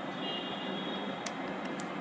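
Low steady room hiss with two faint clicks, about a second and a quarter in and near the end, as a small plastic combination puzzle box is handled and its knobs worked.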